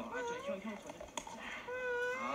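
A young man's playful, high-pitched vocal noises with sliding pitch, cat-like squeals and whines: a few short ones, then a longer held one near the end.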